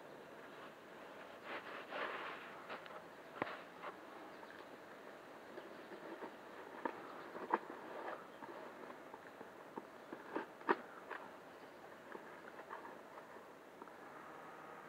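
Faint scattered clicks, taps and rustles of a small cardboard shipping box being handled and its tape cut open with scissors.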